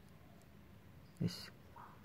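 Faint room hiss, then a man's voice says one short word a little past halfway.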